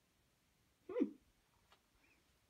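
A single short vocal sound about a second in, falling in pitch, over a quiet room.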